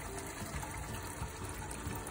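Water pouring in a thin, steady stream from a bowl into a pan of cooked onion-tomato gravy.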